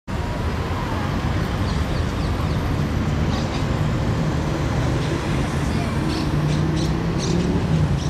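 Steady city street noise: a continuous traffic rumble with indistinct voices in the background.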